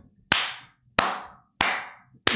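Three loud hand claps, about two-thirds of a second apart, each ringing briefly in a small room.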